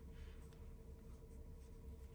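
Very quiet: faint scratching and light ticks of circular knitting needles and yarn as a knit stitch is worked, over room tone with a steady faint hum.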